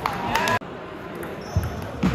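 In a gym during a table tennis match, a brief high-pitched shout comes first and cuts off abruptly about half a second in. A single dull, low thud follows about a second and a half in.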